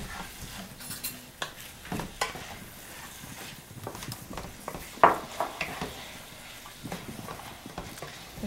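Ground meat sizzling in a frying pan as it browns, stirred with a wooden spoon. Irregular sharp knocks and taps sound over it, the loudest about five seconds in.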